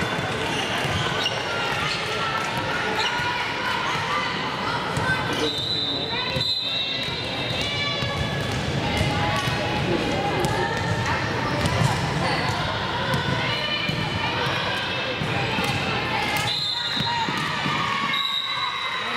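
Voices talking and calling out in a large gym, with a ball bouncing on the hardwood floor now and then. A referee's whistle blows twice, a steady high blast about a second long, about five seconds in and again near the end.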